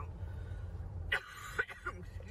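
A woman's laughter trailing off in short breathy bursts, about a second in and again near the end, over a low steady rumble.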